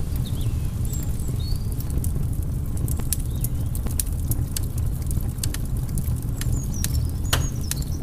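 Fire crackling: a steady low rumble of flames with sharp pops scattered throughout and a few brief high squeals, as a sound effect for burning paper.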